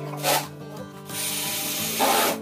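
Wood rubbing and scraping as plywood panels are handled and fitted: a short scrape about a quarter second in and a longer one through the second half, over steady background music.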